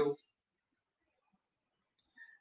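Two faint, quick clicks of a computer mouse about a second in, the pair close together like a press and release.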